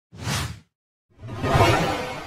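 Whoosh sound effects of an animated logo intro: a short whoosh at the start, then a louder one about a second in that swells and fades slowly with a long tail.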